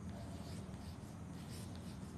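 Chalk writing on a blackboard: faint, short scratching strokes as a word is written out.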